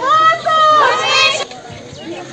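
A group of women shouting in protest in high, strained voices, each shout held and arching in pitch; the shouting drops away about one and a half seconds in.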